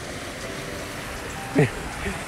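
Steady rush of creek water running over a small concrete spillway, an even hiss. Near the end, a man makes one brief vocal sound that falls steeply in pitch and stands out above the water.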